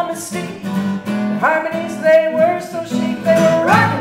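Gypsy-jazz swing song played live on two acoustic guitars, strummed in a swing rhythm, with women singing held notes over them and a rising sung note near the end.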